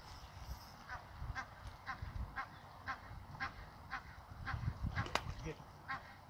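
A goose honking repeatedly, about two short calls a second, then stopping. A single sharp click comes near the end.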